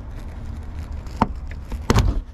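Plastic grille-cover retaining clip being worked loose by a gloved hand, giving two sharp clicks, the louder one near the end, over a low steady rumble.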